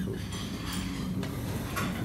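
Café room sound: a steady low hum with a couple of light clinks of dishes and cutlery.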